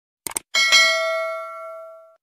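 Subscribe-button sound effect: a quick double mouse click, then a bell ding that rings out and fades over about a second and a half.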